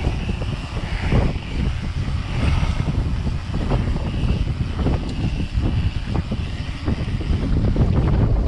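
Wind buffeting a bike-mounted camera microphone over the rumble of knobbly e-mountain-bike tyres rolling on tarmac, with many small knocks and rattles from the bike.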